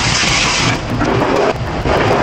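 Commercial pre-rinse sprayer blasting water into a stainless steel pot, the hiss cutting off after about three-quarters of a second. Steel pots and dishware knock and rattle around it.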